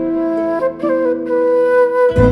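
Background music: a flute playing a melody of long held notes that step to a new pitch a few times, with no bass underneath.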